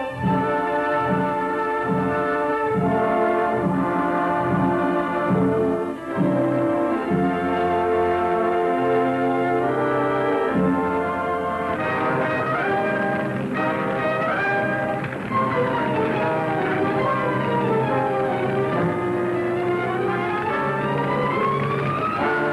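Orchestral film score led by brass. It opens with a low beat about twice a second, moves to held chords, and from about halfway through has lines that sweep down and then climb back up.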